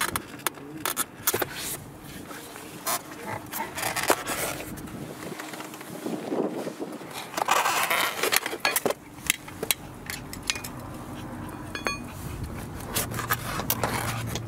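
Stock scissor jack and tools being pulled out of a foam tool tray: foam and plastic scraping and creaking, with frequent small clicks and knocks of metal tools.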